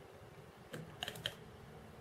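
A few light plastic clicks and taps from small kit parts and a glue applicator bottle being handled: three or four quick ticks about a second in.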